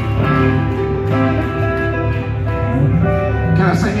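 Live gospel band playing a slow instrumental passage on electric guitar and keyboard. Sustained chords change about once a second over a steady bass.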